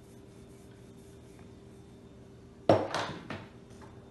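Faint rubbing of dough on a wooden table, then a wooden rolling pin set down on the table with a loud sudden knock near the end, followed by a few smaller knocks as it settles.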